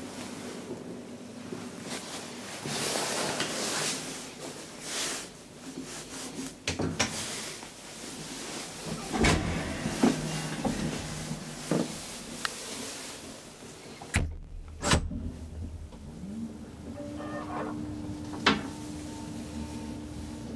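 Elevator door and car-gate clatter with several clicks and knocks and two heavy thuds about three quarters of the way in. A steady elevator drive hum follows, with a single click near the end.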